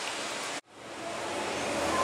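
Steady rush of water at a pool's water slide. It breaks off into silence about half a second in, then fades back up.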